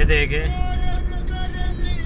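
Steady road and engine rumble of a moving car heard from inside the cabin, with a song's singing voice over it holding one long note.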